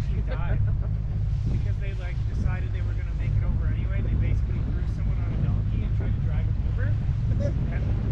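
Outboard motor of an inflatable boat running steadily, a low even drone, with faint indistinct voices of passengers over it.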